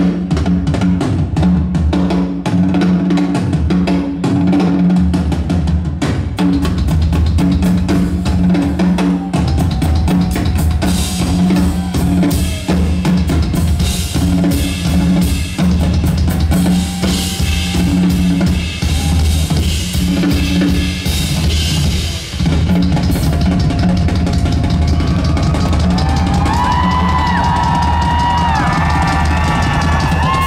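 Rock drum kit played live and loud, with kick, snare and cymbals, over a steady low bass part. The sound fills out in the second half, and sliding higher notes join near the end.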